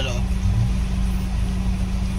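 A vehicle's engine idling, heard from inside the cabin as a steady low hum.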